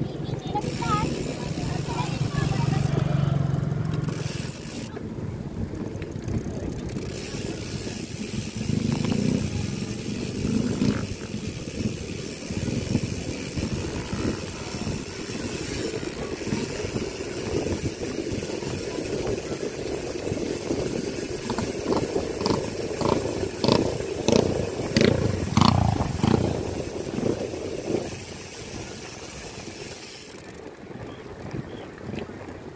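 Wind rushing over the microphone and tyre noise from a bicycle riding on a concrete road, with a steady low drone in the first few seconds and a run of knocks and rattles from bumps in the road near the end.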